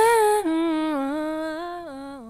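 Scat vocal sample played from a Rossum Assimil8or eurorack sampler: a sung line of a few held notes stepping up and down in pitch. It starts loud, then fades out slowly under a five-second release envelope.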